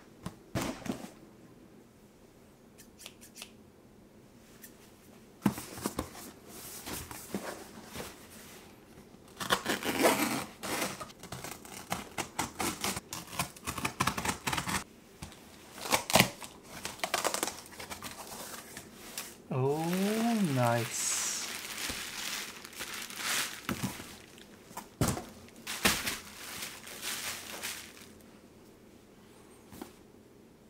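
Cardboard shipping box being opened by hand: packing tape torn and flaps, paper and packing material rustled and crinkled in irregular bursts. About two-thirds of the way in there is a short pitched sound that rises and then falls.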